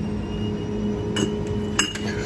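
Glass drink bottles clinking against each other on a drinks-cooler shelf as one is taken out, with a couple of sharp clinks in the second half over a steady low hum.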